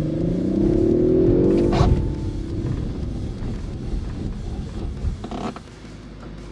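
Two Audi estate cars accelerating hard on packed snow, their engine note rising for about a second and a half. Then, lifting off, they give way to a steady low rumble of tyres on snow as they brake hard to a stop.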